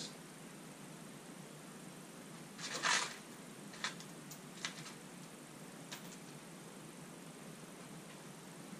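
Plastic packaging rustling briefly about three seconds in, followed by a few light clicks of small hardware being handled, over a steady low room hum.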